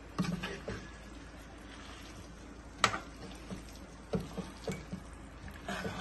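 Metal spoon stirring boiled chickpeas through a thick masala in a metal kadhai: soft moist stirring with scattered clacks of the spoon against the pan, the sharpest about three seconds in.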